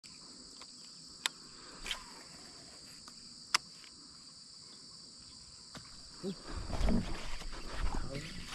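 A steady, high-pitched chorus of insects, with two sharp clicks in the first few seconds. In the last two seconds, louder low rumbling and knocking noise builds up.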